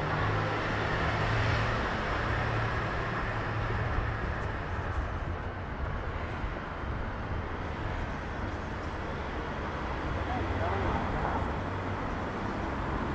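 City street ambience: a steady low traffic rumble, strongest over the first few seconds, with indistinct voices of passers-by.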